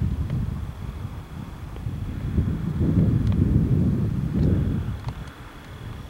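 Wind buffeting the camcorder microphone: a low, gusty rumble that swells about halfway through and eases near the end.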